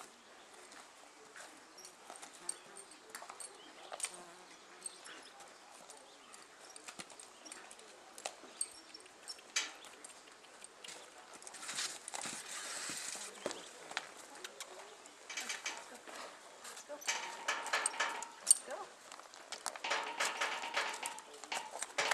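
A horse walking on a dirt arena: soft, irregular hoof footfalls with occasional sharper knocks.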